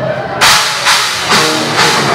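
Live rock band on drum kit and electric guitars kicking in about half a second in. Loud, evenly spaced drum and cymbal hits come about twice a second over the guitars.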